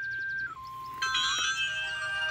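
Music from a story cassette playing through the Mother Goose Storyteller lamp's built-in speaker. A single held note steps down in pitch, then a fuller chord of several steady notes comes in about halfway through.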